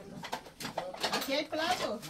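Indistinct voices talking, with a few light knocks.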